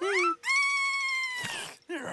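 A cartoon character's high-pitched vocalisation: a quick rising squeak, then one long held squeal that bends downward as it ends. A short rustling noise follows near the end.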